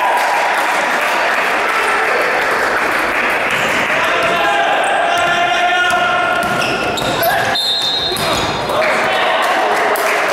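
Game sounds of indoor basketball in a large, echoing gym: the ball bouncing on the wooden floor, short high sneaker squeaks and players' shouts.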